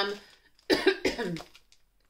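A woman coughing several times in quick succession, starting just under a second in, after inhaling a bit of wax melt while sniffing it.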